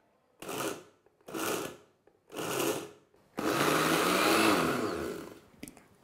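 Kitchen mixer grinder pulsed three times in short bursts, then run for about two seconds before the motor winds down with a falling whine, chopping a coarse mix of dry fruit and flour. It is pulsed rather than run continuously so the nut pieces stay coarse.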